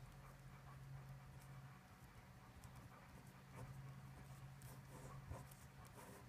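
Faint scratching of a pen writing on paper, in short strokes, over a low steady hum.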